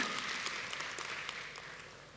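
Congregation applauding, fading away.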